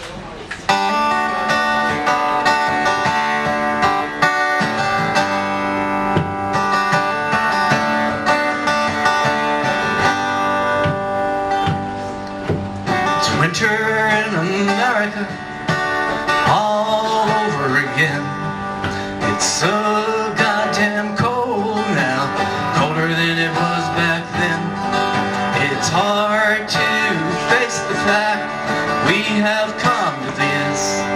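Two acoustic guitars playing a song together, with a man's singing voice coming in about halfway through.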